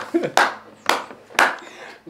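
A man clapping his hands three times while laughing, about half a second between claps.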